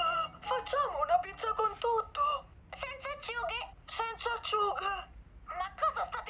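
A high-pitched cartoon voice babbling in short, rising and falling phrases with no recognisable words, with one short pause near the end.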